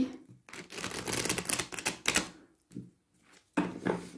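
A deck of oracle cards being shuffled by hand: a quick run of crisp papery clicks lasting about two seconds, then stopping.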